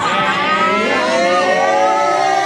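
Several women's voices holding a long, drawn-out shout together, their pitches sliding slowly and overlapping.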